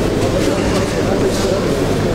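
Several indistinct voices in the hall talking and calling out at once, steady throughout, with no single clear speaker.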